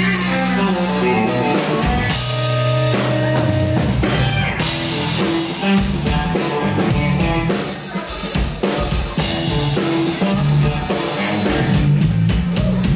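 Live rock band playing an instrumental passage without vocals: electric guitar and electric bass over a drum kit, with repeated cymbal crashes.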